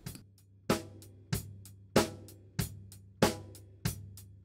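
Recorded live drum kit playing back through its room microphone: a steady beat of drum hits about every two-thirds of a second, each ringing out in the room.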